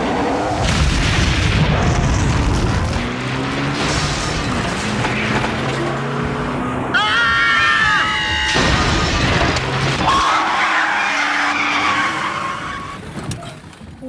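Movie-style tornado sound effects: loud rushing wind with crashes and impacts, and a family screaming about seven seconds in, over music. It dies down near the end.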